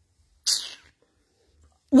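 A short, sharp breathy hiss from a person close to the microphone about half a second in, fading within half a second; speech starts near the end.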